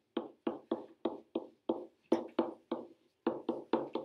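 Stylus strokes on a SMART Board interactive whiteboard as an equation is handwritten: a run of short, sharp taps and scrapes, about four a second, with a brief pause about three seconds in.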